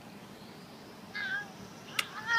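A little girl's short, high-pitched vocal squeal about a second in.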